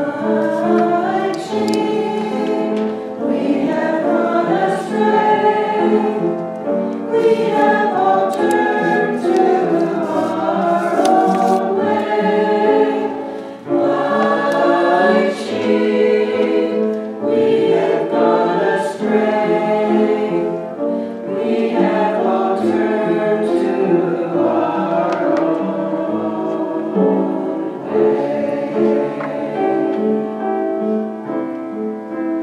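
Small mixed church choir, men's and women's voices together, singing an anthem in sustained phrases, with a short break between phrases about halfway through.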